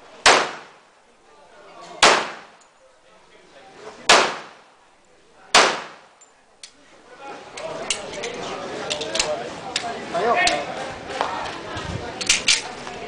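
Four pistol shots fired at a slow, even pace about one and a half to two seconds apart, each with a short ringing echo. In the second half come quieter metallic clicks and gun-handling noise.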